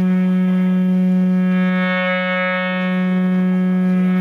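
Live band music: a single droning note held steady on electric guitar and bass run through effects, with a slight distortion.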